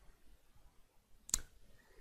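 A single computer mouse click, short and sharp, about a second and a half in, against quiet room tone.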